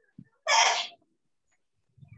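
A single loud, short burst of breath noise from a person, about half a second long, about half a second in.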